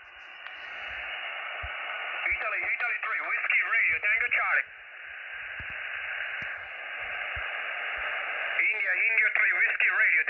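Xiegu X6100 HF transceiver receiving a single-sideband voice on the 20 m band through its speaker: a steady hiss of band noise, cut off sharply above about 3 kHz by its 2.9 kHz receive filter, with a distant station's voice coming through about two seconds in for a couple of seconds and again near the end.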